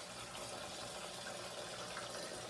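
Kitchen sink tap running steadily onto chitterlings in a colander, rinsing off their Italian-dressing marinade.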